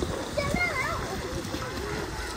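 High-pitched children's voices calling out at a swimming pool over a steady wash of splashing water.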